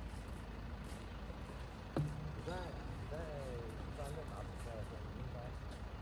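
Outdoor ambience with a steady low rumble of distant traffic. A single sharp knock comes about two seconds in, followed by a few seconds of short, distant pitched calls that rise and fall.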